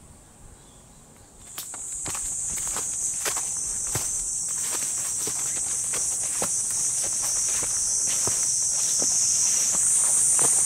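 Footsteps of a hiker walking on a forest trail through ferns and undergrowth, a step every half second or so. About a second and a half in, a cicada starts a loud, steady, high buzz that keeps on and grows a little louder near the end.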